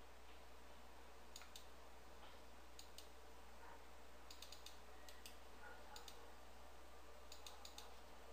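Faint computer mouse and keyboard clicks, about a dozen in short runs and pairs, over a low steady electrical hum.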